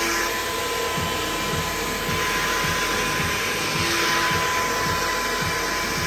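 Handheld hair dryer blowing steadily: a strong rush of air with a thin steady whine running through it.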